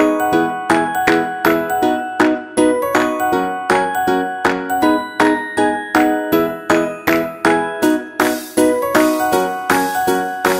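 Background music: a bright, bell-like melody of evenly paced notes, about two a second. A high hissing layer joins near the end.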